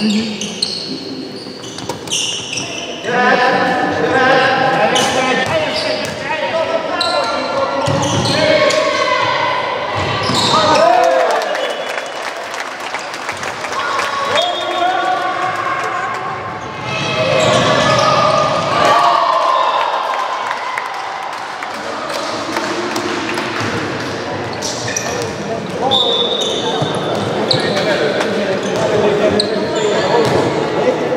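A handball bouncing on a wooden sports-hall floor as players dribble and pass, among shouted calls from players and coaches, all echoing in the large hall.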